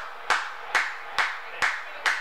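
One person clapping his hands in celebration: four sharp claps about half a second apart.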